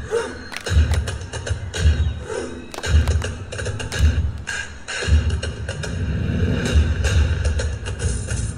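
Dance music with deep bass hits about once a second and sharp percussive clicks between them.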